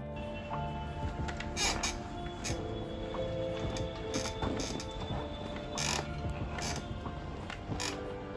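Gaming chair's base creaking and squeaking several times as someone sits in it and leans back against the backrest: a squeak that has come on after two months of use. Background music plays throughout.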